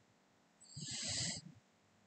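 A person's short, quiet, breathy vocal sound with a low rasp, under a second long, starting about half a second in.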